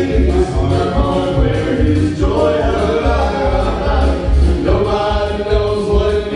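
Male gospel vocal group of three singing in close harmony, with instrumental accompaniment carrying a steady, pulsing low bass beat.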